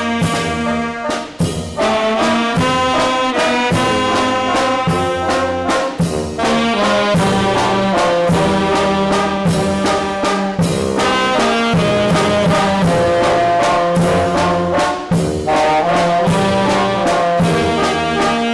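Youth wind band playing a tune: saxophones, clarinet and brass carry the melody over a steady beat of bass drum and cymbal strikes.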